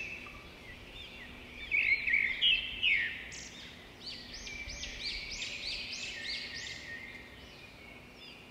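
Birds chirping and calling in a rural ambience: a few louder chirps about two seconds in, then a run of repeated rising-and-falling notes, two or three a second, through the middle.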